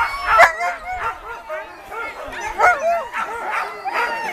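Alaskan Malamutes vocalizing: a string of short pitched calls, several of them within a few seconds, each gliding up and down in pitch.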